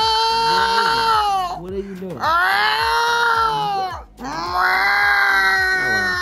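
A woman's voice imitating a cat in heat: three long, drawn-out yowls, each rising and then falling in pitch, with short breaths between them.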